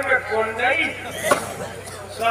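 A man speaking through a stage loudspeaker system over a steady electrical hum, with a single sharp knock a little past halfway.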